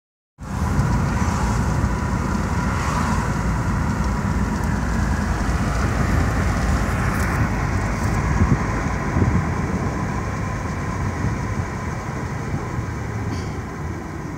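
Road noise inside a moving car's cabin: a steady rumble of tyres and engine.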